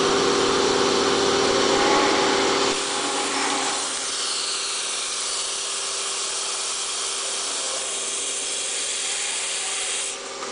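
Automatic foil cutting and separation machine with pneumatic heads running: a steady hum with a constant tone under a broad hiss of air. A little under three seconds in, the lower rumble drops away, leaving the tone and the hiss.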